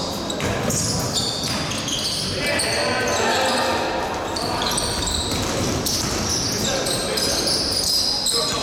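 Basketball game sounds in a large gym hall: the ball bouncing on the court, short high-pitched squeaks of players' shoes, and players calling out, all echoing in the hall.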